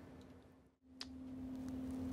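A video edit: faint room noise fades out to silence, then a click about a second in and a faint, steady low electrical hum that slowly grows louder.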